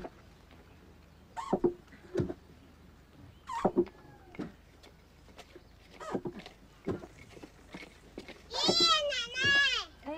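Short, scattered farmyard animal calls. About 8.5 seconds in, a child's two loud, drawn-out, high-pitched shouts of "爷爷" (grandpa), calling home.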